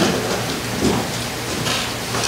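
Bible pages being turned, with irregular paper rustles and flutters, to find Philippians chapter 2.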